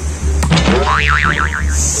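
Cartoon 'boing' sound effect: a sharp knock, then a springy tone that wobbles up and down several times before fading near the end.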